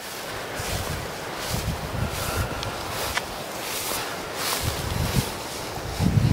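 Wind buffeting the microphone in low, uneven gusts, with dry tall grass swishing underfoot at a walking pace, about once a second.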